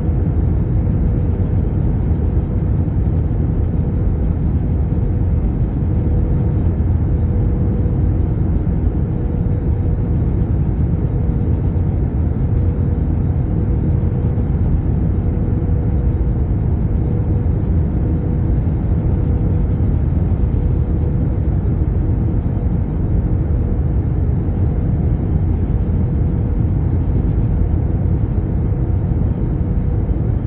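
Airbus A321neo cabin noise heard from a window seat during the descent to land: a steady, deep rumble of engines and airflow, with a faint steady hum-like tone riding on it.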